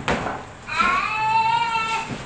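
A toddler's high-pitched, drawn-out squeal of about a second, rising at first and then held, after a short knock at the start.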